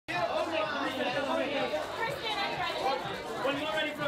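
Several voices chattering over one another, with no single voice clear: the talk of photographers and onlookers along a press line.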